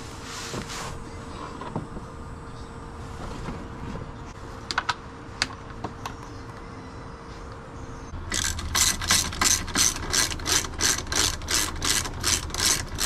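A hand ratchet clicking in a quick, even run of about four clicks a second, starting about two-thirds of the way in, as the underbody splash-shield screws are driven into plastic. Before that there are only a few light clicks.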